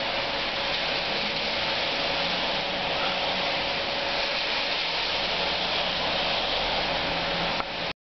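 Heavy rain pouring down onto a street and wet surfaces, a steady hiss that cuts off suddenly near the end.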